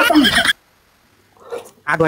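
A wavering, whinny-like vocal sound that cuts off about half a second in. After a pause comes a short vocal sound falling in pitch near the end.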